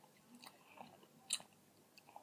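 Quiet room with a few faint, short clicks, the sharpest one about two-thirds of the way through.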